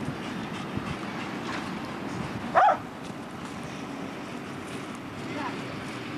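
A large dog barks once, a short sharp bark about two and a half seconds in, over a steady background of wind and road traffic.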